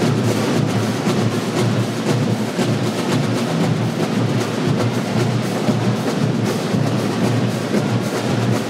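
A school fanfare band's drum section playing live, with a dense, steady percussion sound carried mostly by the bass drums.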